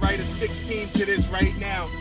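Hip hop beat with deep bass and a rapped vocal over it, playing on a car stereo and heard inside the cabin.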